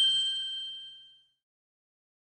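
A bell-like chime ringing out as the last note of a short outro jingle, fading away over about a second, then silence.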